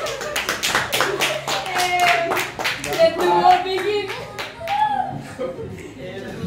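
A small group of people clapping, with voices laughing and calling out over it; the clapping is densest in the first three seconds and thins out after.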